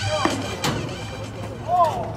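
Ballpark music fading under field noise. About two-thirds of a second in comes a single sharp pop, the pitch smacking into the catcher's mitt, and near the end a short call that rises and falls.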